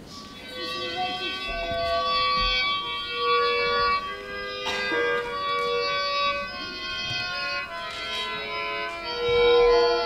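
Accompaniment music for a Russian folk dance, a slow melody of long held notes that begins about half a second in, with the loudest note held near the end.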